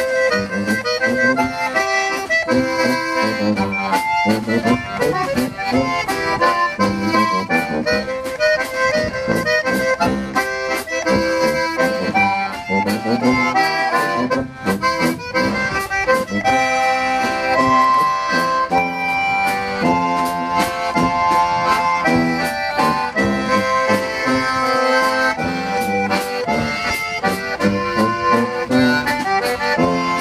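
Concertina leading a live tune with tuba and drum kit, the concertina's reedy chords and melody on top over a steady beat from the drums.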